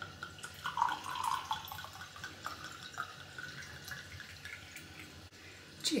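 White wine being poured from a bottle into a cut-glass wine glass, the liquid splashing into the glass as it fills, loudest in the first second and a half.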